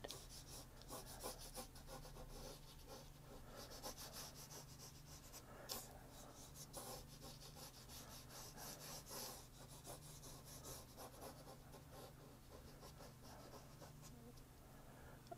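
Faint scratchy brushing of a watercolour brush drawn across watercolour paper in short strokes, over a low steady hum.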